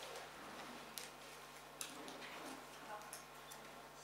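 A few faint, sharp clicks, about a second apart, against quiet room sound with faint voices.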